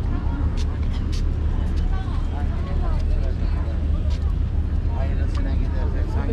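Busy street ambience: a steady low rumble of city traffic, with passersby talking and scattered short clicks.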